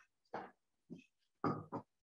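A person's voice in three short, low murmured bursts with silence between them, too brief for words to be caught.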